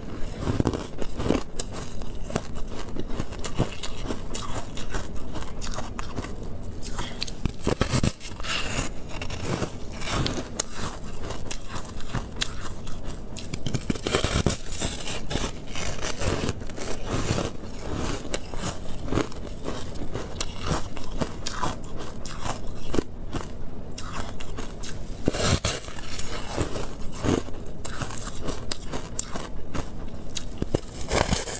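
Biting and chewing a thin slab of refrozen shaved ice, close to the microphone: a continuous run of crunches with a few louder bites.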